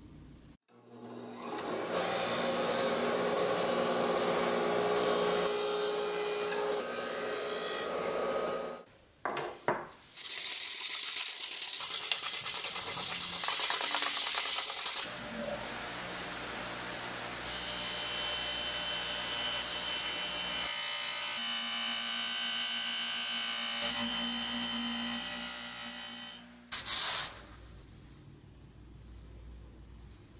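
Workshop tool work in three parts. A powered tool runs steadily for several seconds. Then, about ten seconds in, sandpaper rubs by hand against a small metal part for about five seconds. Then a steady machine runs again and stops shortly before a brief loud burst near the end.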